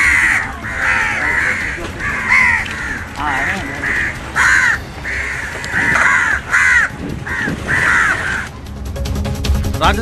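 Crows cawing again and again, roughly two caws a second, until they stop about eight and a half seconds in. A short burst of bulletin music follows near the end.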